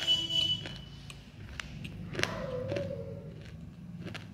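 Close-up mouth sounds of chewing soaked broken clay pot: a series of sharp clicks and crunches, loudest at the very start.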